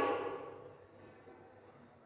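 Near silence: room tone, after a woman's voice fades out in the first half-second.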